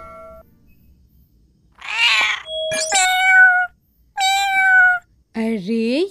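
Kitten meowing twice, each meow under a second long and falling slightly in pitch, after a short breathy burst.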